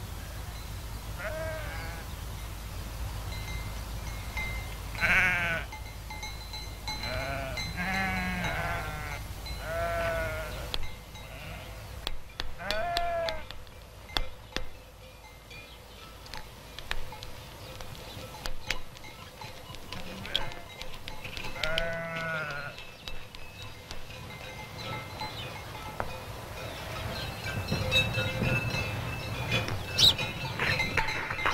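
Farm animals bleating: a series of quavering bleats, the loudest about five seconds in, more between about seven and thirteen seconds, and one more a little past the twenty-second mark.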